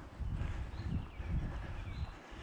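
Footsteps of someone walking with the camera, heard as low thuds on its microphone about twice a second. A bird sings a few short falling notes in the second half.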